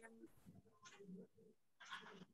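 Near silence: a pause in a woman's Quran recitation, with only a few faint, brief noises.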